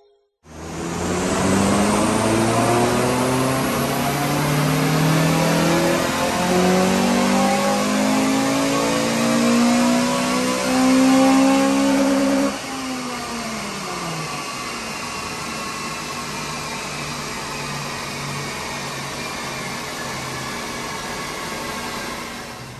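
A Honda Civic Type R FN2's 2.0-litre K20 four-cylinder VTEC engine making a full-throttle power run on a rolling road, with a decat 4-2-1 manifold, Milltek exhaust and HKS induction kit on the stock map. The engine note climbs steadily through the rev range for about twelve seconds. Then the throttle is lifted and the pitch falls away, settling into a steady, quieter drone.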